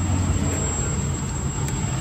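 A vehicle engine idling: a steady low rumble, with a faint thin high whine above it.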